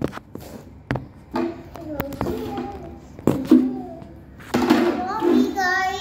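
A young child's voice, calling and vocalizing without clear words, with a few sharp thuds in between.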